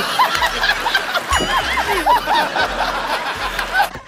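Hearty laughter from a man, over many voices laughing together at the same time.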